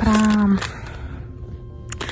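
A woman's voice drawing out one word for about half a second, then faint background music with steady held notes under low room noise.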